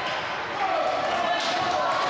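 Basketball dribbled on a hardwood gym floor, with a sharp bounce about a second and a half in, over a background of voices.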